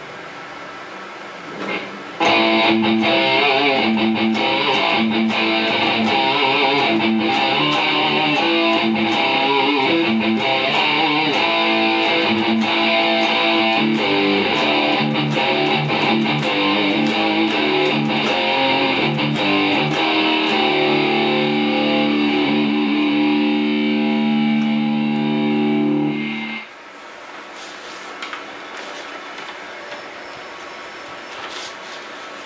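A Vantage electric guitar in drop D, played through Amplitube's Metal Lead amp model with heavy distortion, plays a lead line over a backing track. The playing starts about two seconds in and ends on long held notes that cut off sharply a few seconds before the end.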